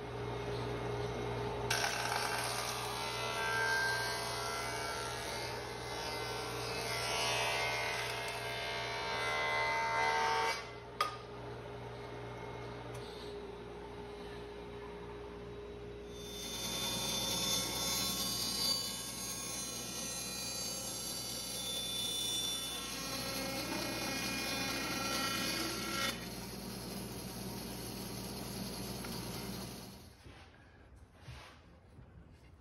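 Woodworking power tools milling spruce oar blanks: a table saw running and ripping a long board for about eight seconds, then, after a short lull, a jointer cutting along a board for about ten seconds.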